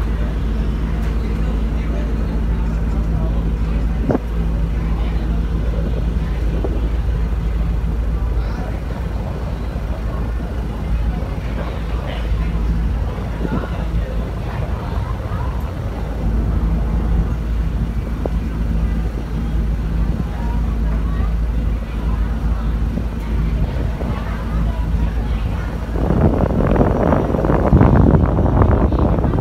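Car ferry's engine running with a steady low drone, with passengers talking faintly. About two seconds before the end, wind on the microphone grows louder.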